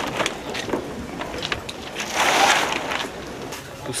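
Rustling of a synthetic-fabric bag and its contents being handled and packed, in uneven swells, loudest a little past the middle, with a few light knocks.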